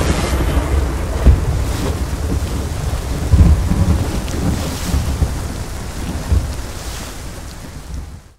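Thunderstorm sound effect: steady rain with deep rolls of thunder, the strongest about one and a half, three and a half and six seconds in, slowly fading toward the end.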